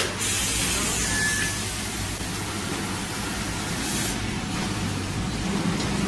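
Multihead weigher and vertical packing machine running on shredded cheese: a steady low machine hum under a constant hiss, with short bursts of louder hissing just after the start and again about four seconds in.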